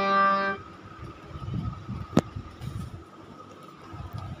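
A held instrumental chord, the song's accompaniment, cuts off about half a second in. It is followed by faint background noise with a thin steady high tone and a single sharp click about two seconds in.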